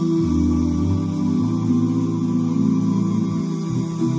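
Recorded wordless "ooh" vocals, several voices layered and held as sustained chords, playing back as a background-music stem. The lower note changes early on and again near the end.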